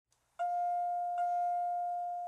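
Elevator chime: two strikes of the same bell-like tone a little under a second apart, the second ringing on as it fades.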